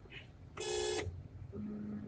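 A short buzzy electronic beep lasting about half a second, then a faint low steady hum near the end.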